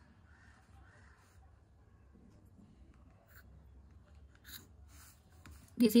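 Faint pencil drawing on paper along a plastic ruler, with a few light clicks between about three and five seconds in. A woman's voice starts right at the end.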